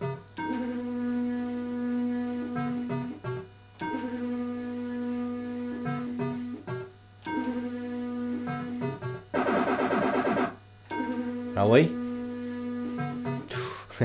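Electrocoin Big 7 fruit machine's electronic sound effects as the reels spin: a held electronic tone a few seconds long for each spin, repeated with short breaks between games. A denser buzzing jingle comes about ten seconds in, followed by a quick rising sweep.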